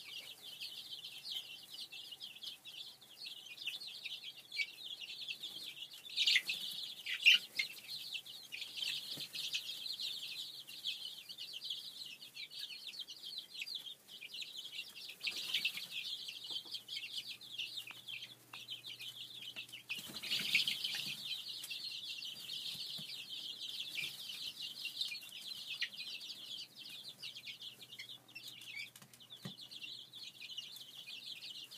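A brooder full of young chicks peeping continuously, many high cheeps overlapping into a steady chorus, with louder flurries about six seconds in and again around twenty seconds.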